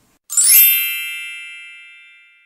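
A single bright chime struck once, about a third of a second in, its high ringing tones fading away over about two seconds.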